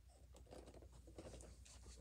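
Faint rustling and light scratchy taps of boxed Funko Pop figures being handled, one set down and the next picked up.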